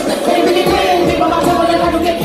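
Live hip-hop music through a club PA, recorded on a phone from the floor: a beat under a long held note.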